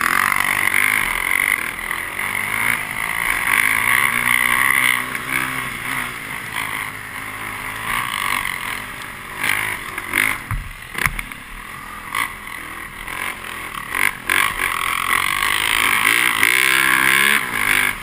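Snow bike (a dirt bike on a ski-and-track snow conversion) running under a helmet camera, its engine pitch rising and falling as it is ridden, with a couple of sharp knocks about ten seconds in.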